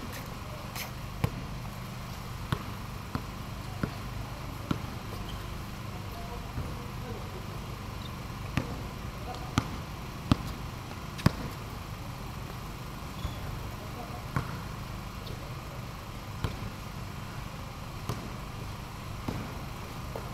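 Basketball bouncing on a concrete court: sharp, irregular bounces about once a second, the loudest about ten and eleven seconds in, over a steady low hum.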